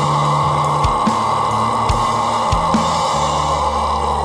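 Heavy rock band playing an instrumental passage: sustained distorted electric guitar chords over bass and drum kit, with no vocals.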